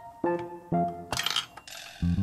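Pink plastic Hello Kitty toy dispenser giving out a plastic capsule: a clinking rattle about a second in as the capsule drops into the chute, over light background music.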